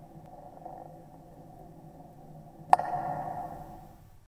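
Logo-animation sound effect: a soft steady hum, then one sharp hit nearly three seconds in, followed by a ringing tone that fades away.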